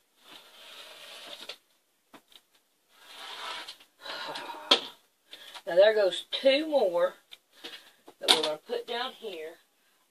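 Blade cutting through polyester fiber-fill batting along a quilting ruler, two soft rasping strokes with a sharp click at the end of the second. Then a woman's voice sounds without clear words through the second half.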